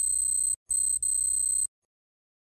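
Electronic computer-style beeping sound effect: a steady high-pitched tone, broken twice by short gaps, that cuts off suddenly near the end.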